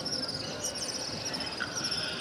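Continuous rapid high-pitched chirping over a low murmur of a large crowd in the open courtyard, with the call to prayer paused between phrases.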